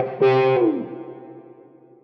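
Electric guitar (PRS Silver Sky) played through an overdriven Qtron-style envelope filter: two hard-picked notes, the second about a quarter second in. The tone sweeps downward as the filter closes behind the attack, then rings out and fades away.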